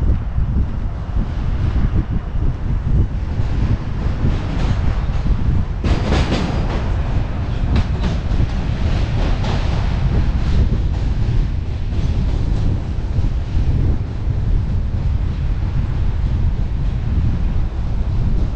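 Subway train passing on the tracks beside the bike path, a rapid run of metallic clicks and rattles from the wheels and rails, loudest from about six to ten seconds in. Under it, steady heavy wind rumble on the moving bicycle-mounted camera.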